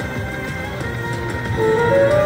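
Video slot machine's free-games bonus music playing while the reels spin, electronic tones with a low pulsing beat; new held notes come in about one and a half seconds in.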